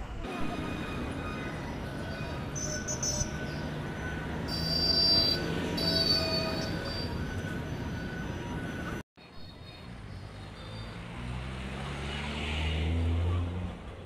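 Busy city street noise with traffic and a few high squealing tones near the middle. It cuts out abruptly about nine seconds in, then resumes with a low vehicle engine sound rising in pitch near the end.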